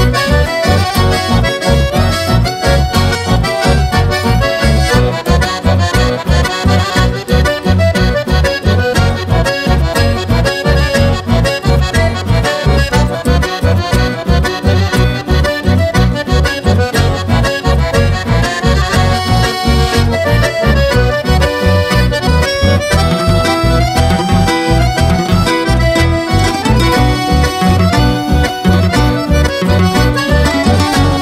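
Chamamé played instrumentally by a band, an accordion carrying the melody over a steady, evenly repeating bass beat.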